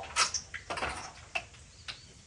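A few sharp metallic clicks and short scrapes as an old distributor is worked up and out of a small-block Ford engine, the loudest click about a quarter second in.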